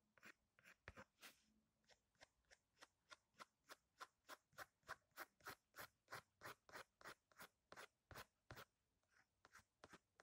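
Pencil drawing on paper: quick, short scratching strokes at a steady rhythm of about three a second, faint, with a brief quieter patch near the end.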